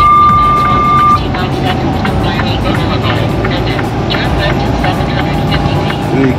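Steady road and engine noise inside a semi-truck cab at highway speed, with music playing. A steady electronic beep ends about a second in.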